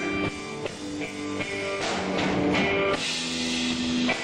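Live blues music: electric guitar playing a line of single held notes between vocal phrases, with drums behind it.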